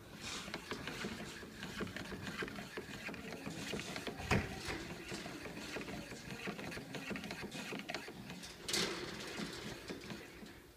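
Hand-cranked wooden linkage model, a crank wheel driving a bolted wooden leg and fin, rattling and clicking continuously as it is turned, its loose wooden joints knocking. There is a sharper knock about four seconds in and a louder clatter near nine seconds.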